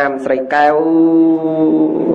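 A man's voice intoning a Buddhist recitation in a chanted, sing-song delivery. After a few short syllables it holds one long steady note for over a second.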